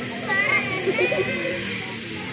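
Several children's voices chattering and calling over one another, high-pitched and indistinct, with a faint steady high whine underneath.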